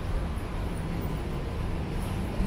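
Street ambience on a narrow city street: a steady low rumble with no distinct events.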